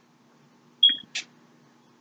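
A short, high-pitched beep about a second in, followed at once by a brief click, over a faint steady hum.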